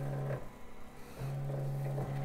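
Ricoma MT1501 embroidery machine's frame drive moving the hooped frame with a steady low hum. The hum stops about half a second in and starts again just past a second.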